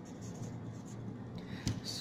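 Marker pen writing on a board, its felt tip rubbing across the surface as words are written, over a faint steady low hum. A couple of sharp clicks come near the end.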